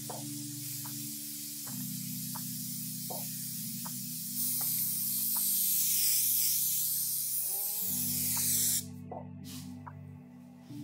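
Aerosol spray can hissing steadily as it sprays onto the back of a tufted rug. It gets louder about halfway through and cuts off suddenly near the end. Background music plays throughout.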